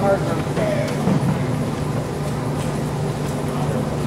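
Indistinct talking over a steady low hum of room noise in a large hall, with no drumming or fifing.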